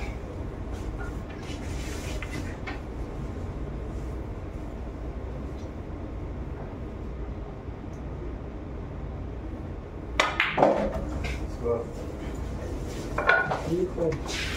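Pool cue striking the cue ball, with balls clacking together on the table, about ten seconds in. A few faint ball clicks and a steady room background come before it, and voices of onlookers rise near the end.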